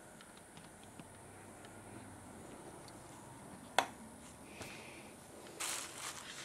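Quiet room tone broken by handling of a multimeter probe over a circuit board: one sharp click about four seconds in and a short soft rustle near the end.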